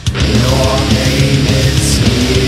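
Doom metal band playing loud, dense heavy music, with a brief drop in the sound right at the start.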